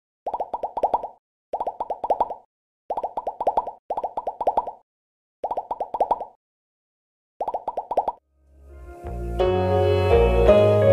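Bubbly cartoon popping sound effect for a subscribe-button animation: six short bursts of about five quick pops each, with silent gaps between. Near the end, ambient music with a deep bass note swells in.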